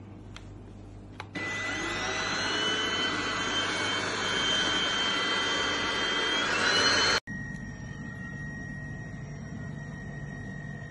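Cordless stick vacuum cleaner running at full suction: a loud, steady rush of air with a high motor whine. It starts about a second in and cuts off abruptly about seven seconds in, after which only a quieter steady hum remains.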